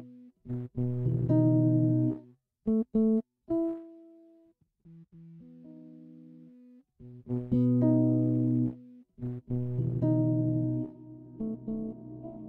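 Lo-fi instrumental music: chords in short phrases that cut off abruptly, leaving brief gaps of silence, with a quieter held passage in the middle and a softer sustained part near the end.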